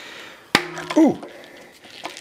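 A single sharp snap about half a second in: the bead of a Geax mountain bike tire popping into its seat on a carbon rim under about 60 psi from a floor pump. The snap is the sign that the tire has finally seated.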